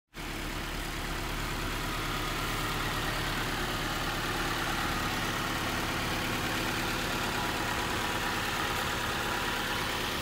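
The replacement four-cylinder engine of a 1993 Nissan Altima idling steadily, heard directly from the open engine bay.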